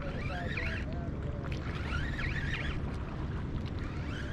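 Steady low wind rumble on the microphone with water moving close below it, over open water.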